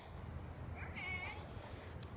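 A faint, short meow-like cry about halfway through, lasting about half a second, rising briefly at its start and then holding one pitch.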